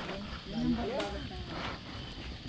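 A man's voice making a short drawn-out vocal sound, rising and falling in pitch, about half a second in.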